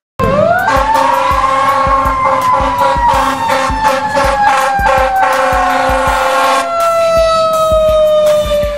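Fire engine siren winding up sharply and then slowly falling in pitch as the truck passes. A steady horn blast sounds under it for about six seconds and then stops.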